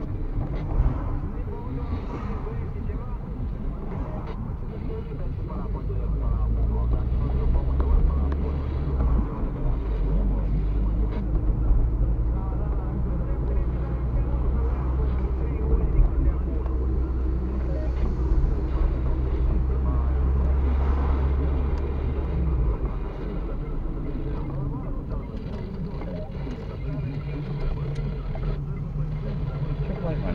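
Car engine and road noise heard from inside the cabin while driving, a low steady hum that changes pitch a few times.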